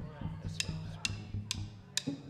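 Drummer's count-in: four sharp clicks of drumsticks struck together, about half a second apart, over low bass guitar notes, just before the band comes in.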